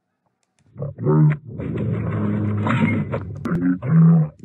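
Soundtrack of a homemade video playing back in an editing program: after a brief near silence it starts about a second in, with a loud, dense stretch of sound and a short pitched voice-like call at the start and again near the end.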